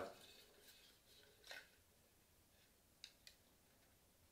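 Near silence: room tone, with a few faint short clicks, one about one and a half seconds in and two close together about three seconds in.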